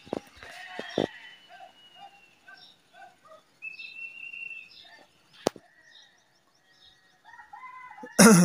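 Faint outdoor calls and whistles from pigeon keepers calling a circling flock of domestic pigeons down. A high held whistle comes near the start and another about halfway, with short lower calls between them and a few sharp clicks.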